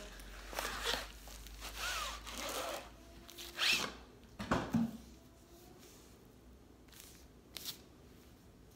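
Quiet rustling and rubbing of packaging as a rolled-up bath mat is drawn out of a cardboard box, with a few light knocks and a couple of short squeaks.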